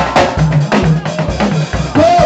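Live band playing an upbeat dance groove: drum kit with kick and snare hits about four a second over a repeating bass line.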